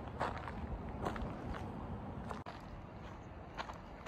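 Footsteps crunching on a dirt and gravel surface, a few steps about half a second apart, with an abrupt break a little past halfway and a couple more steps near the end.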